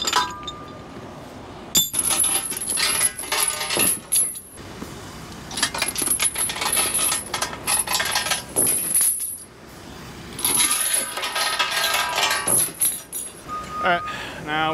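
Steel tie-down chains clanking and rattling as they are pulled from the trailer's chain box and thrown out onto the wooden deck. The clinking comes in three bouts with short pauses between.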